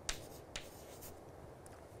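Chalk writing faintly on a chalkboard, with a couple of sharp taps of the chalk: one at the start and one about half a second in.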